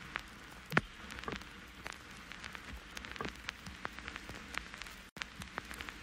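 Faint, scattered light clicks and taps of fingers handling a Redmi Note 10 smartphone, with a louder click about three-quarters of a second in.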